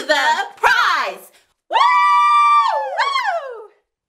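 Voices finishing a cheer chant, then a long high-pitched cheering yell held for about a second before sliding down in pitch and fading.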